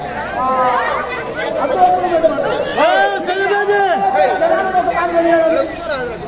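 A man's voice delivering stage lines in Telugu with long held notes, some drawn out for about a second.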